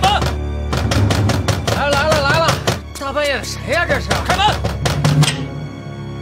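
Fists pounding on wooden lattice doors, a run of repeated hard knocks.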